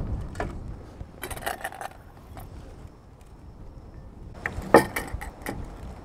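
Scattered light clicks and rustles of handling, with a denser cluster near the end as a cardboard box of plastic wrap is picked up and opened, over a low rumble of wind on the microphone.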